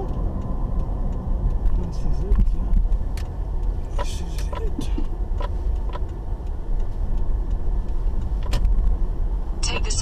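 Car engine and road noise heard from inside the cabin as the car drives slowly, a steady low rumble with scattered light clicks, about two a second in the middle. A navigation voice prompt starts just before the end.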